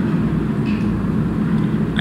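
Steady low background rumble with no distinct event, a pause between sentences of speech.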